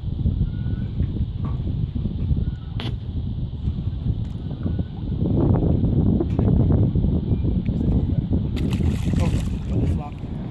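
Gusty wind buffeting the microphone, a jagged low rumble that grows louder from about the middle of the clip, with a few brief clicks of handling near the end.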